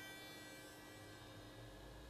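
Near silence: a faint steady electrical hum and hiss.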